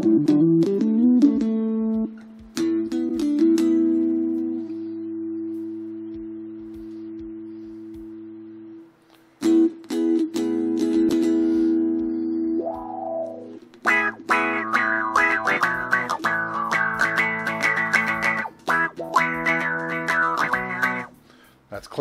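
Electric guitar played through the Tascam DP-24/32's auto-wah effect. Long held chords come first, with a wah sweep about 13 seconds in, then busier strumming through most of the second half.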